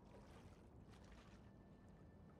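Near silence: faint steady ambience with a low hum and soft water lapping.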